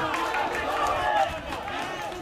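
Several people's voices calling out and chattering over one another at an outdoor football match, louder in the first second and a bit.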